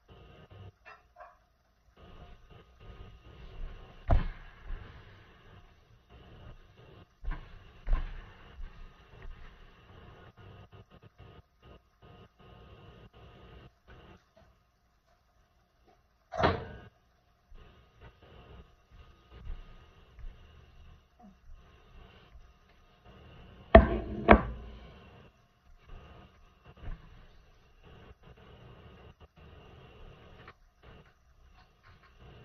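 Kitchen clatter from cooking: scattered knocks of pots and utensils, with a pair of loud knocks near the end and a short louder sound about halfway, over a faint steady hum.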